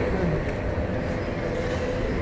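A city bus passing on the street: a low rumble of engine and tyres with a steady whine above it.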